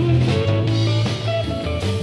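Live rock band playing: electric guitars over bass and a drum kit, with a steady beat.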